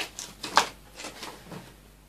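A few short clicks and rustles of objects being handled, the loudest about half a second in, settling toward quiet near the end.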